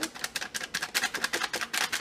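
Plastic spice bag crinkling and being tapped as ground cinnamon is shaken out of it into a glass mason jar: a quick, irregular run of crackling ticks, about ten a second.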